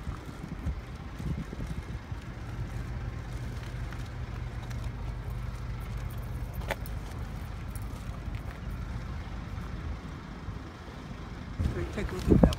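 A motor vehicle's engine running on the street, a steady low hum over outdoor street noise.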